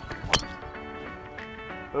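A driver striking a golf ball off the tee: one sharp crack about a third of a second in, over background music with sustained notes.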